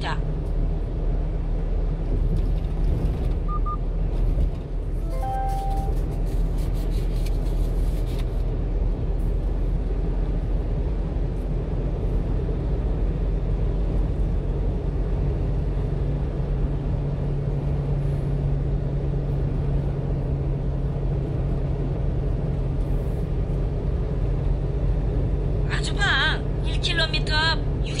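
Steady low engine and road drone inside the cab of a 1-ton truck driving along. A few short electronic beeps sound about four to six seconds in.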